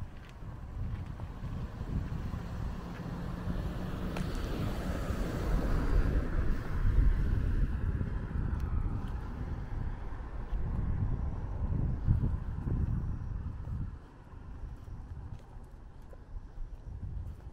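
Wind buffeting the microphone in gusty, uneven rumbles. It swells toward the middle and eases off near the end.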